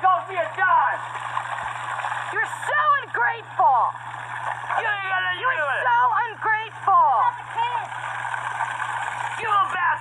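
Several voices shouting and exclaiming excitedly in sweeping pitches, over a steady rushing noise.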